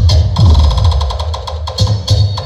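Loud electronic dance music played through large stacked sound-system speaker cabinets: a heavy bass beat with a fast ticking rhythm above it.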